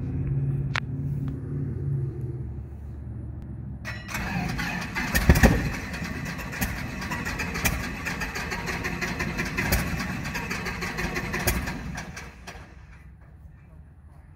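A Piper Cherokee 180's four-cylinder Lycoming engine being started. About four seconds in it cranks and catches with a loud burst, then runs unevenly with sharp regular beats. It drops much quieter about twelve seconds in.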